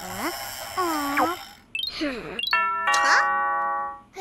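Cartoon soundtrack: wordless, sliding vocal sounds, then a held bell-like chime with many overtones through the second half that stops abruptly at the end.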